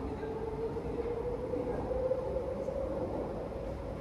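Underground MRT metro train whining and rumbling, its motor tone rising slowly in pitch as it gathers speed.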